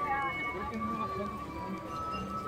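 Faint, indistinct chatter of several people talking in the background, with no clear words.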